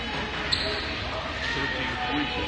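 Crowd chatter in a school gymnasium, with one sharp thud about half a second in.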